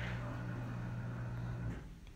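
Steady low hum with a faint hiss: the room tone of a small room, fading away near the end.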